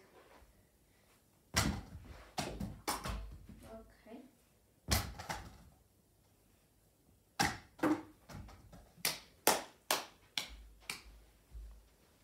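Tennis balls being thrown and bouncing, a series of sharp knocks as they hit the plastic scoop catchers and things around them. There are a few spaced knocks at first, then a quicker run of about ten in the second half.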